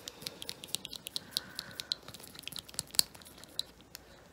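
Wooden stir stick scraping and clicking against the inside of a small glass jar as it stirs up settled marbling paint, in quick irregular ticks, with one sharper click about three seconds in.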